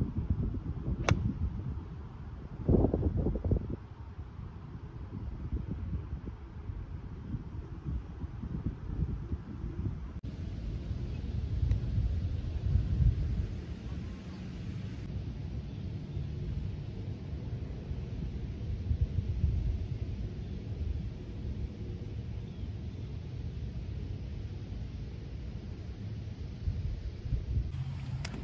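Wind buffeting the microphone with a steady low rumble. About a second in comes a single sharp click of a golf iron striking the ball.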